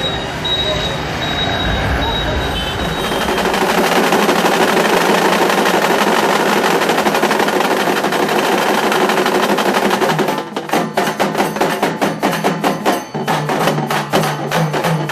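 Large Maharashtrian dhol drums beaten with sticks by a drumming troupe: a few seconds in, the sound swells into a dense, continuous roll. About ten seconds in it breaks into a fast, even beat of sharp strokes.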